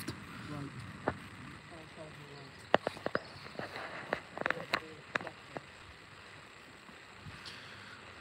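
Scattered sharp clicks and knocks, most of them in the middle few seconds, over a quiet outdoor background with faint distant voices near the start.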